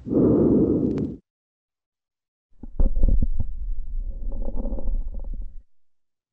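Lung sounds heard through a stethoscope on the back: a breath sound that stops about a second in, then after a pause a second breath from the lower back with many sharp crackling clicks over it. These are basal crackles, a sign of pulmonary congestion that the doctor puts down to mitral stenosis.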